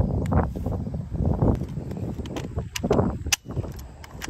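Low rumbling handling and wind noise on the microphone, then a few sharp metallic clicks in the second half, the loudest near the end, as a rifle and its loaded magazine are handled.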